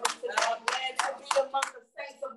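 Hand claps in a steady rhythm, about three a second, six in all.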